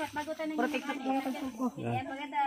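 Indistinct conversation: several people talking quietly, with no single clear voice in front.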